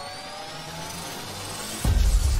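Logo-intro sound design: a rising riser with several climbing tones builds up, then a sudden deep bass hit lands near the end.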